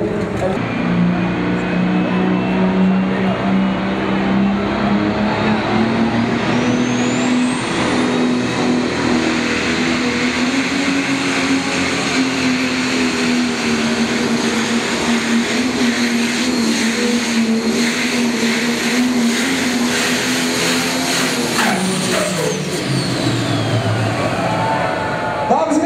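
Turbocharged diesel engine of a Prostock pulling tractor running flat out under load on a full pull. A high whine climbs steeply over the first several seconds and then holds. Near the end the engine comes off power: its pitch drops and the whine falls away.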